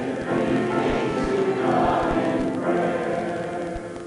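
A church congregation singing a hymn together in held, sustained lines, with a brief break between phrases near the end.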